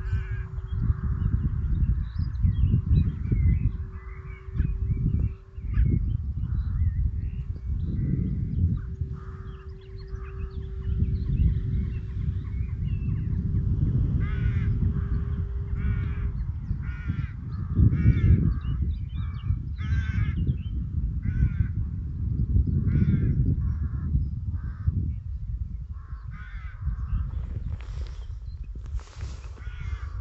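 Wind buffeting the microphone. A bird gives short harsh calls, about one a second, through the second half. A faint steady hum runs under the first half and stops about halfway through.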